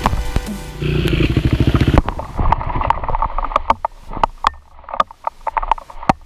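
Dirt bike engine idling steadily. About two seconds in, the sound cuts abruptly to scattered clicks and knocks.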